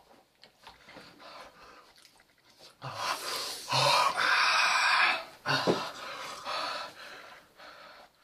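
Heavy, noisy breaths hissed in and out through the mouth, a run of them starting about three seconds in, the longest over a second and a half: a person reacting to the burn of a hot chilli just eaten.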